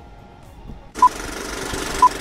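Film countdown leader sound effect: a hiss of old-film crackle that starts suddenly about a second in, with a short beep each second, twice.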